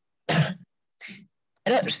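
A woman clearing her throat: one short burst, then a fainter second one, just before she starts speaking.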